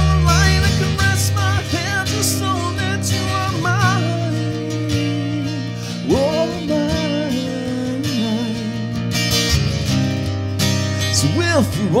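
Amplified acoustic-electric guitar, a Wechter Pathmaker Elite, playing an instrumental passage: a lead melody of wavering, bent notes over sustained chords that change every few seconds, with a fast downward slide near the end.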